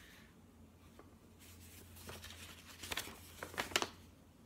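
Paper rustling as magazine pages are handled and turned, faint at first, with a few sharp crinkles of the paper near the end.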